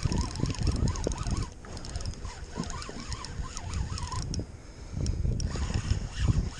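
Spinning reel being cranked as a fish is reeled in. It gives a whirring tone that wavers up and down repeatedly and pauses briefly about a second and a half in. Wind rumbles on the microphone throughout.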